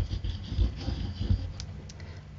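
Handling noise from squeezing a plastic bottle of tacky glue over paper on a cutting mat: a run of soft low thumps, then two light clicks near the end.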